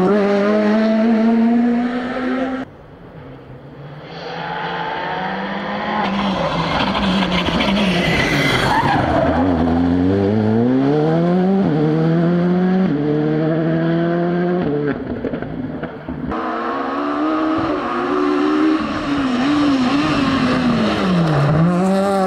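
Rally cars passing at full racing speed, one after another, with hard cuts between them. Engines rev high and rise in pitch under acceleration, step down at each upshift, and drop as a car lifts and brakes for a bend.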